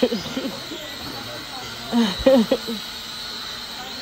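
A woman laughing in short bursts, once right at the start and again about two seconds in, over a steady background hum with a faint high whine.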